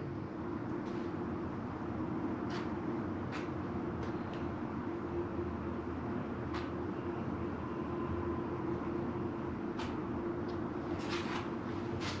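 Steady low background hum with a constant low tone, with a few faint, light ticks scattered through it.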